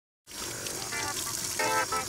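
Water running from a tap: a steady hiss, with two short pitched notes over it, one about a second in and one near the end.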